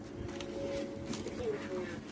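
Light handling sounds from a cardboard box and the plastic wrap on the fan parts inside it. A few faint soft knocks and rustles come over a low held tone that dips in pitch once near the end.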